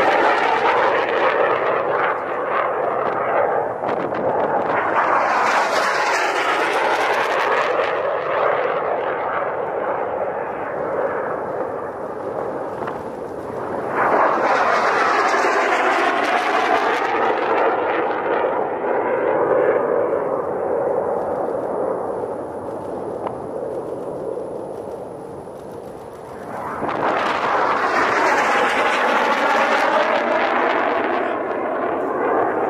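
T-38 Talon jet trainers flying past, their twin turbojet engines roaring in a series of swells that rise and fade as each jet passes. The loudest swells come about fourteen seconds in and again near the end.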